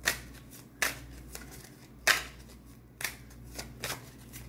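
A deck of tarot cards being shuffled by hand: a series of short, crisp card-shuffling bursts, roughly one a second, the loudest about two seconds in.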